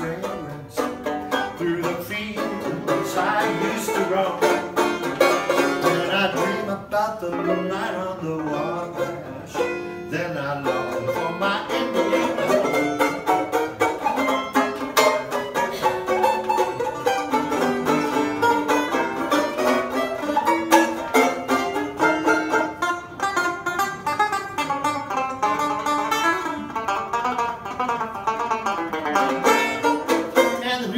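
A resonator banjo played solo, a continuous instrumental passage of quickly picked notes.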